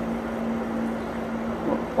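Thermomatic Desidrat Exclusive dehumidifier running: a steady airflow rush from its fan with a constant low hum from the machine.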